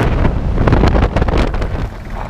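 Wind buffeting the microphone of a camera held out of a moving van's window, over the rumble of the van driving on a gravel road; it drops a little near the end.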